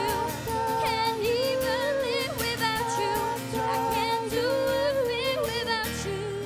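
Live acoustic song: a steadily strummed acoustic guitar under a woman's voice singing wavering, ornamented melodic lines.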